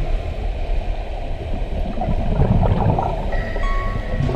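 Muffled underwater rumbling and sloshing of water picked up by a submerged action camera, swelling about two seconds in. Background music comes back in near the end.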